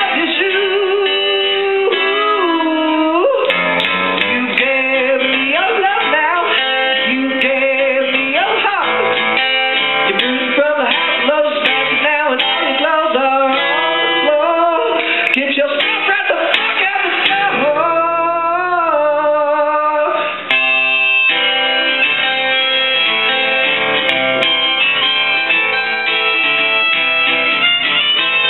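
A man singing a pop song while strumming an acoustic guitar, with a brief drop in the sound about two-thirds of the way through.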